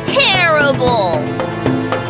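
A cartoon child's voice gives a long wordless moan that slides down in pitch, over light background music.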